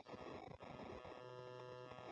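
Faint background hiss, with a brief low hum of several steady tones about halfway in, lasting under a second.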